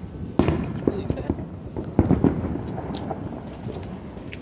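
Fireworks and firecrackers going off around the street, with two louder bangs about half a second in and about two seconds in, and smaller scattered cracks between them.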